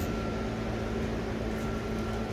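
A steady mechanical hum with a faint high whine held on one pitch, unchanging throughout.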